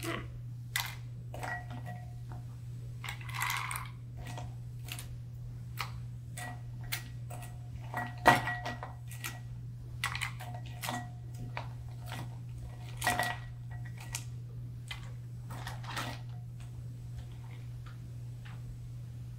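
Ice cubes scooped from a bowl and dropped into a copper mug: irregular clinks, each with a short metallic ring, and a brief rattle of ice a few seconds in. A steady low hum runs underneath.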